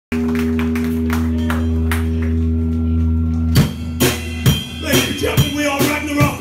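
Live metal band: a held, distorted low chord on guitar and bass rings under light cymbal hits, then about three and a half seconds in the full band crashes in with heavy drums and a riff.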